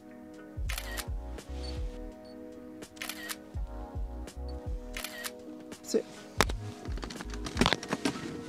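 DSLR camera shutter firing about five times, each a short sharp click, over background music with steady sustained chords.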